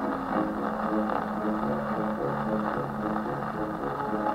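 A 1948 Columbia 78 rpm foxtrot record played on an acoustic Victor gramophone: the orchestra plays steady, rhythmic music. The sound is thin with little treble, over a light hiss from the record surface.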